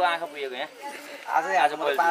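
Speech only: a man talking, with a short pause about half a second in before he speaks again.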